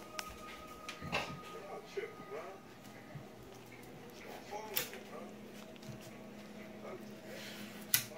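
Faint background talk in a kitchen with a few sharp clicks and knocks, the loudest about five seconds in.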